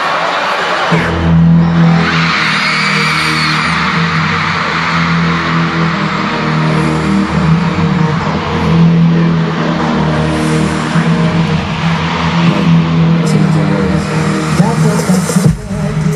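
A K-pop dance track's heavy-bass intro playing loud over stadium concert speakers, the beat coming in about a second in, with a crowd screaming and cheering throughout. The music cuts out briefly just before the end.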